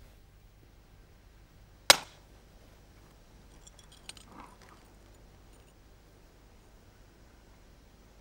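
A single sharp crack about two seconds in: a hammer strikes an antler punch set on the platform of a large flint core, detaching the first long crested blade by indirect percussion. A few faint clicks of flint and tools being handled follow.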